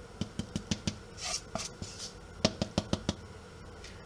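Silicone spatula knocking and scraping a wooden bowl as dry almond-flour mix is emptied into a bread machine's metal pan: a quick series of light knocks in the first second, then more knocks about two and a half seconds in.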